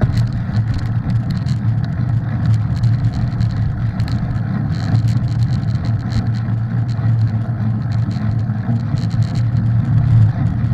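Mountain bike riding fast on a dirt trail: a steady low rumble of tyre and wind noise with frequent light rattles, picked up by a camera mounted on the bike or rider.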